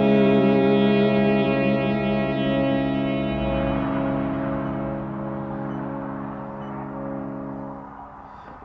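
Instrumental passage from a small acoustic-electric band: a violin holds a note with vibrato over sustained electric guitar and piano chords, with echo and reverb on the sound. The chord rings on and slowly fades away over the last few seconds.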